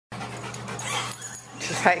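A dog panting in quick breaths, winded after a bout of running.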